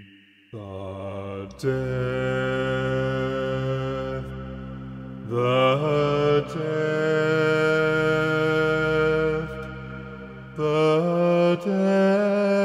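A slow orchestral passage in which a low voice sings long held notes over sustained chords. The harmony shifts a few times, after a brief near-pause at the very start.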